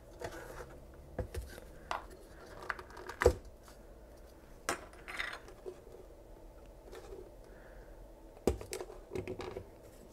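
Scattered small knocks and clicks of handling a wooden radio cabinet: it is turned and set down on the bench mat, and the tuning knob is worked off its shaft. The sharpest knock comes about three seconds in.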